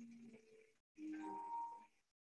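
Soft, slow background music of sustained, held notes. It cuts out completely for a moment just before the middle, then a new held note comes in.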